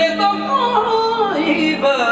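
A male voice singing a fast, ornamented run live into a microphone, the pitch wavering and sliding downward, over a steady held accompaniment note that stops near the end.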